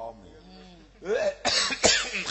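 A man coughing loudly into a microphone: two hard coughs near the end, among bits of his voice.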